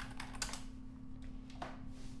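A few scattered keystrokes on a computer keyboard as a file name is typed and entered.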